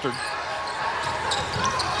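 Basketball game sound: a ball bouncing on a hardwood court and short sneaker squeaks over the steady murmur of an arena crowd.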